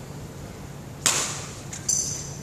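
A badminton racket hitting a shuttlecock on a serve about a second in: one sharp smack with a short ringing echo. A second sharp, higher sound follows just before the end.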